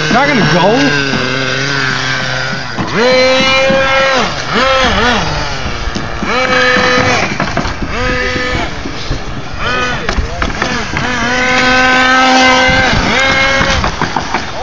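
Nitro RC truck's small two-stroke glow engine revving hard in several throttle bursts, each rising to a high steady pitch, holding briefly, then dropping back, the longest burst near the end.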